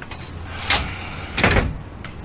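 A door opening and shutting: a sharp knock about two-thirds of a second in, then a louder thud around a second and a half in.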